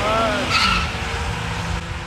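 Ford Mustang running down a drag strip: engine and tyre noise with an odd pitched noise in the first second. The noise raises the question of whether the Mustang lost its transmission.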